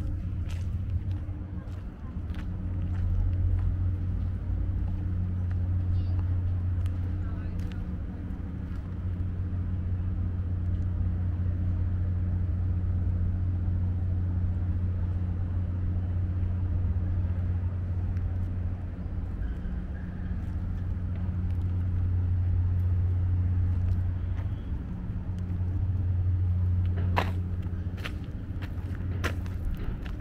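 A steady low engine-like hum, like machinery or an idling engine running, with a couple of sharp clicks near the end.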